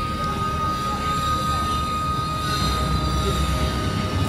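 A steady low rumble with one thin, high tone held over it.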